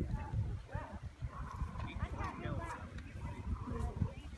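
Hoofbeats of a show-jumping horse cantering on grass, heard as dull low thuds, with faint voices behind.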